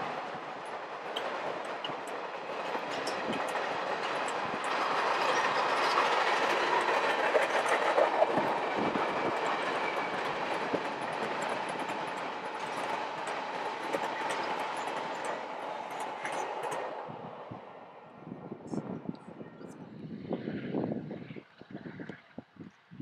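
Cars of a passing Union Pacific train, passenger cars then freight cars, rolling by close at track speed, with wheels clicking over the rail joints. The sound swells about a quarter of the way in, then cuts off suddenly about three-quarters through. Gusty wind on the microphone follows.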